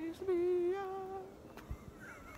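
A man humming a long held note with a slight waver, which fades out about a second and a half in.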